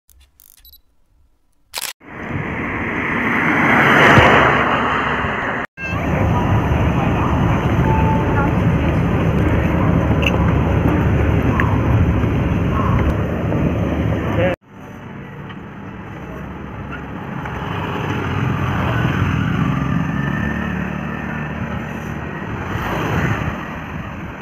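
Indistinct voices over steady outdoor background noise, broken by abrupt cuts about 2, 6 and 15 seconds in.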